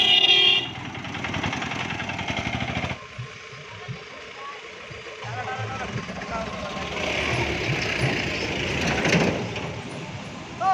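A vehicle horn toots briefly at the start as an auto-rickshaw's small engine runs past with a pulsing beat for about three seconds. After a quieter stretch, a pickup truck's engine and tyres pass, loudest about seven to nine seconds in.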